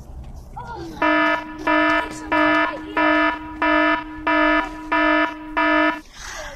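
An electronic alarm beeping: a buzzy, pitched tone repeating eight times at about one and a half beeps a second, starting about a second in.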